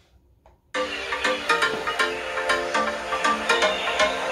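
Near silence, then about a second in, music with a steady electronic beat starts abruptly, played through a smartphone's loudspeakers in a speaker test.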